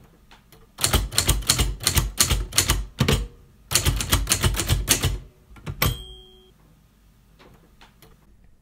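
Manual typewriter keys being struck in two quick runs of about five keystrokes a second, with a short pause between them. They end with one more strike and a brief bell-like ding.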